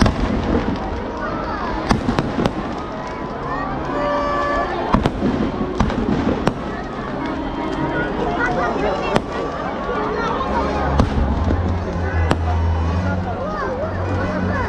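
Fireworks packed into a burning Ravana effigy going off in sharp bangs and crackles, about one every second or two, over the shouting and chatter of a large crowd. A low rumble comes in near the end.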